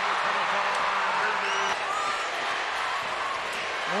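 Arena crowd cheering after a made three-pointer, a steady roar with a few voices faintly over it.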